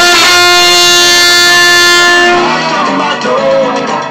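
A trumpet holds one long, steady note for about two and a half seconds and then stops, over a backing track of a worship song that carries on afterwards.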